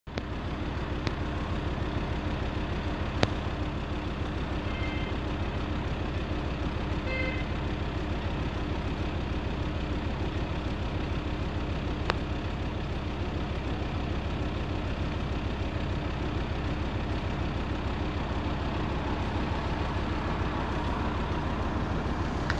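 Steady roadside traffic rumble, with three sharp pops and two short high-pitched beeps.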